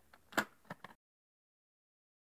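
A cassette tape being handled and slotted into a player: a few light clicks in the first second, the loudest about a third of a second in.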